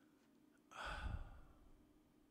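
A single heavy sigh, an exhaled breath starting just under a second in and fading away within about a second.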